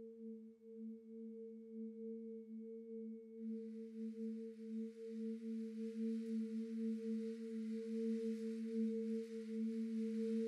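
A sustained electronic drone: a low steady tone and a second one about an octave above it, both wavering gently in level. About three and a half seconds in, a soft hiss joins and slowly grows as the whole sound gets louder.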